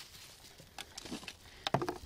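Faint handling noise: a few light clicks and knocks as a small metal instrument box is picked up and turned over in the hand, with a slightly louder cluster near the end.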